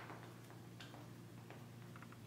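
Faint, irregular soft ticks of a makeup sponge being dabbed against the skin to blend foundation, over near silence.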